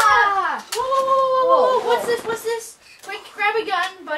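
Boys' voices crying out without words, high-pitched and drawn out, each cry sliding downward, with shorter cries near the end.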